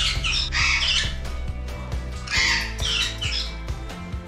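Pet parrots squawking harshly in two bouts of about a second each, the first near the start and the second about two and a half seconds in, over background music.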